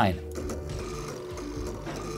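Stepper motors of a small desktop laser engraver running in a steady, stepping buzz as the laser head is moved to recenter it over the piece.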